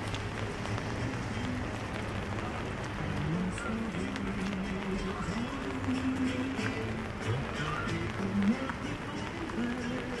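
Footsteps on wet paving stones over a steady hiss of city rain. Behind them a low melody holds its notes and steps from pitch to pitch. There is one sharper knock about eight and a half seconds in.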